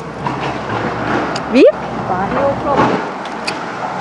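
Speech outdoors: a voice asks "Wie?" with a sharply rising pitch about a second and a half in, and other talk follows, over a steady background of street and traffic noise.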